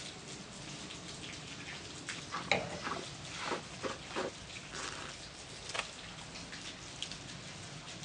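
Faint wet mouth sounds of champagne being tasted: a sip drawn from the glass, then the wine worked around the mouth, with scattered small clicks and drips of sound over a low hiss.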